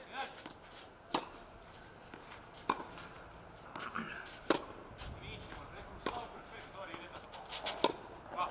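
Tennis ball struck by rackets in a baseline rally: five sharp hits, roughly one every second and a half to two seconds, with fainter thuds of the ball bouncing on the clay court between them.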